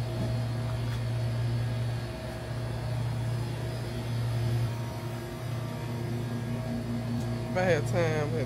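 Steady low hum of a shop's indoor ambience, with a few faint sustained tones over it. A voice starts just before the end.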